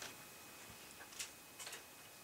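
Quiet room tone with a few faint, irregular clicks about a second in and again near the end.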